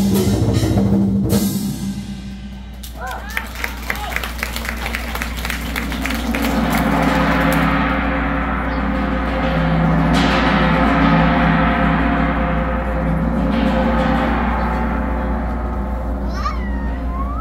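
Chinese drum and percussion ensemble ending a piece: the full band with drum kit cuts off about a second and a half in, a quick run of drum strikes follows, then gongs and cymbals ring on over a deep lingering hum, with another crash about ten seconds in.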